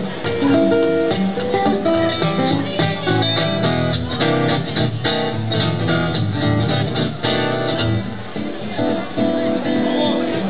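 Steel-string acoustic guitar played solo in an instrumental break between sung verses: quick picked single notes and chords, with a stretch of rapid strumming in the middle.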